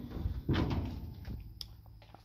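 The steel hood of a 1969 Dodge Coronet 500 being swung open on its hinges, with a clunk about half a second in and a small click near the end.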